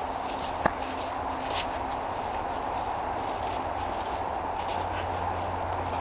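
Footsteps of a person walking over grass and loose dirt, soft and irregular, over a steady background hiss, with one sharp click less than a second in.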